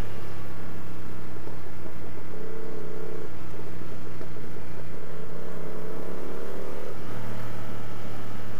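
Yamaha MT-07's parallel-twin engine running as the bike rides downhill: a steady low drone, with a higher engine tone that rises slowly in the middle before the low drone returns near the end.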